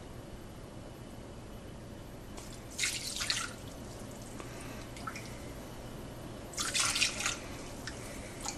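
Ladlefuls of steeped sumac water poured through a fine mesh strainer, splashing twice, about three seconds in and again about seven seconds in, with a few faint drips between.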